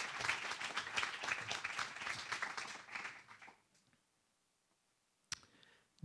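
An audience applauding, a dense patter of many hands clapping that thins and dies away about three and a half seconds in. A single sharp click follows shortly before the end.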